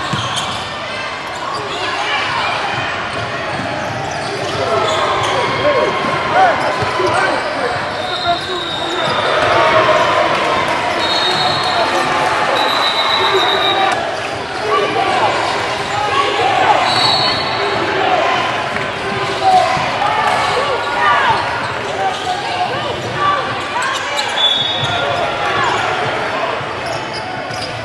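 Live sound of a basketball game in a gym: a ball bouncing on the hardwood floor and sneakers squeaking briefly several times, over a continuous babble of players and spectators talking and shouting, echoing in the large hall.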